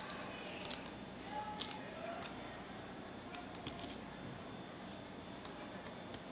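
Faint, scattered crisp clicks of a regular kitchen knife cutting along and through a rainbow trout's soft bones, with a small run of them near the middle.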